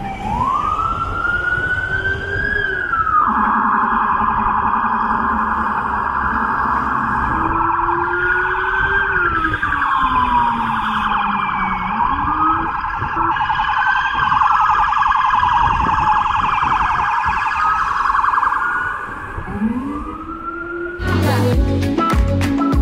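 Emergency vehicle sirens sounding in city traffic: several overlapping wails rise and fall in pitch, with a fast warble through most of the time. Music comes in near the end.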